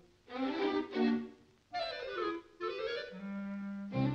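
Orchestral cartoon underscore with a clarinet carrying the tune: a few short phrases, a sliding figure in the middle, then a low held note near the end.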